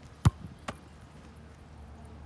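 A soccer ball struck hard, giving one sharp thump, followed about half a second later by a second, fainter thud.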